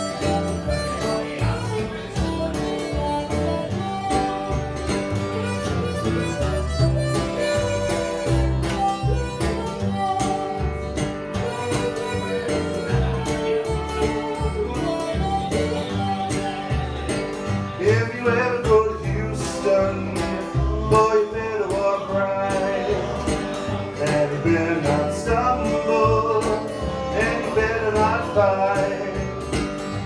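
Live acoustic blues instrumental break: a harmonica takes the lead over a strummed acoustic guitar and a plucked double bass. In the second half the harmonica line bends and wavers.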